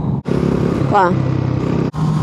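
Motorcycle engine running steadily at cruising speed, with wind noise rushing over the rider's microphone. The sound cuts out for an instant twice.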